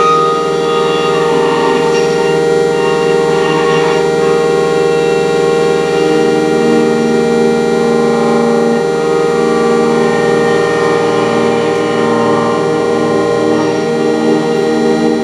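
Improvised noise-drone music: a dense, loud stack of sustained electronic tones generated by live-coded square and sine waves, with bowed acoustic guitar. A strong steady tone holds throughout, and a lower pulsing tone comes in about six seconds in.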